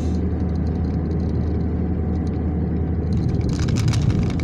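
Road noise heard inside a moving car's cabin at highway speed: a steady low rumble of engine and tyres, with a short burst of hiss near the end.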